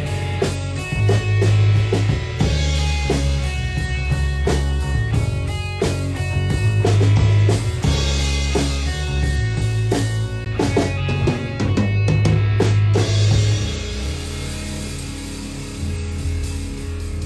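Live rock band playing an instrumental passage on drum kit, electric bass and electric guitar. Heavy bass notes change every second or so under regular drum hits, and the drumming thins out near the end.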